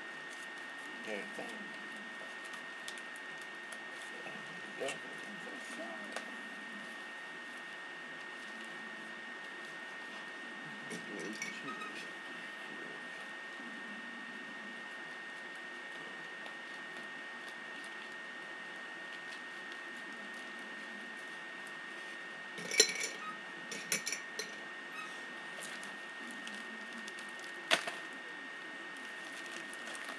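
Packaging being worked open by hand: sparse handling noise, then a cluster of sharp clicks and clinks about three-quarters of the way in and one more near the end, over a steady high whine from the recording.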